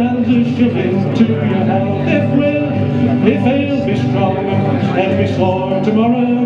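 Acoustic guitar strummed steadily through an instrumental break between verses of a live folk song, amplified through a PA.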